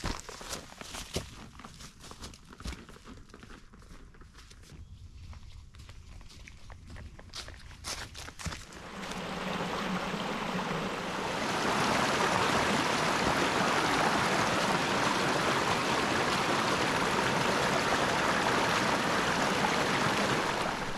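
Footsteps on a leaf-covered forest trail, with short scattered crunches. From about nine seconds in a small brook spilling over rocks takes over, settling into a steady, louder rush from about twelve seconds.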